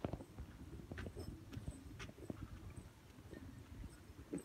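Faint footsteps of a person walking, heard as short knocks about once a second over low handling rumble.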